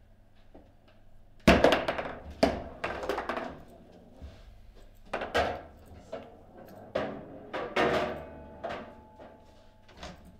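A foosball table being handled: an irregular run of hard knocks and thunks as the rods and figures are moved and knocked, the loudest about one and a half seconds in.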